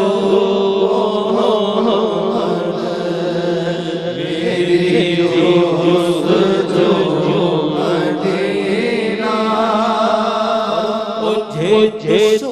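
A man's voice chanting a devotional naat in a wavering, melismatic melody over a steady low sustained drone, with no spoken words.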